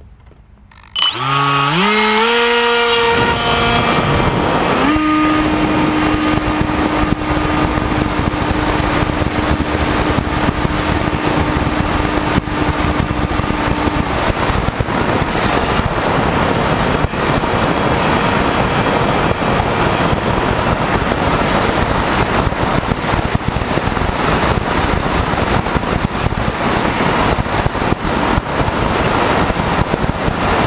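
HK Bixler glider's brushless electric pusher motor and propeller throttling up about a second in, its whine rising sharply in pitch, then running at power. Loud rushing airflow on the onboard camera's microphone carries on throughout, with a steady motor tone for about ten seconds before it is lost in the wind noise.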